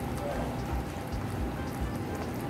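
Sugar syrup bubbling at a steady, vigorous boil in an aluminium saucepan. The syrup is close to its thread stage.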